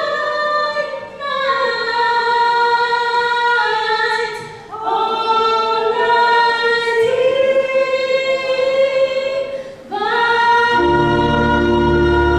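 Women singing without accompaniment through microphones, in long held notes that change pitch every few seconds. A keyboard accompaniment comes back in near the end.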